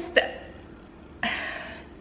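A woman's brief vocal catch just after the start, then an audible breath in a little past halfway, in a pause between sentences.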